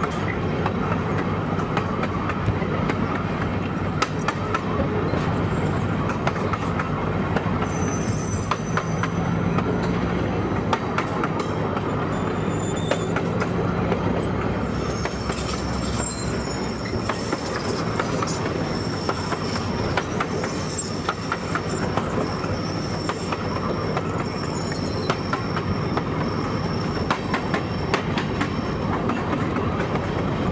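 Train rolling along jointed track, with a steady running rumble and scattered clicks of the wheels over the rail joints. High-pitched wheel squeal comes and goes from about eight seconds in, as the train takes curves.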